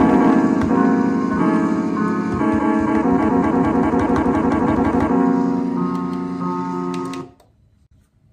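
Piano-like keyboard chords played from the pads of an Akai MPC One sampler, changing every second or so, with quick repeated notes in the middle and a held chord. The sound cuts off suddenly near the end.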